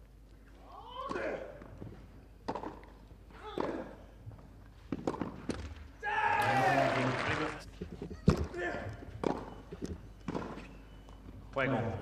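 Tennis ball struck back and forth with rackets in a rally on a clay court: a series of sharp hits roughly a second apart. A loud voice sounds for about a second and a half in the middle.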